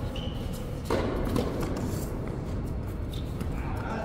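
Tennis rally on an indoor hard court: a sharp racket-on-ball strike about a second in is the loudest sound, followed by a few lighter knocks of the ball and players' feet. A short high squeak comes just before it, over the steady hum of the indoor hall.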